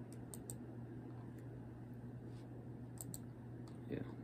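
Faint clicks of a computer being operated, a quick cluster near the start and a pair about three seconds in, over a steady low hum.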